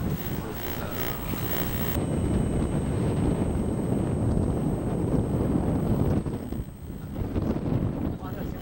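Wind blowing across the camcorder microphone on an open rooftop, a loud, steady low rumble that drops for a moment near the end.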